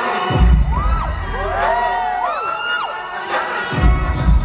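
Concert crowd screaming and cheering, with several high screams rising and falling over one another, over the heavy bass hits of the live pop backing track.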